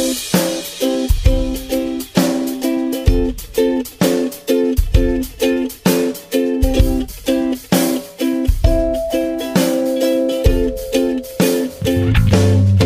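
Background music: an upbeat track of plucked strings over a drum kit, with a steady beat.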